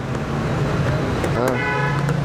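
Steady road-traffic hum, with a vehicle horn sounding briefly near the end.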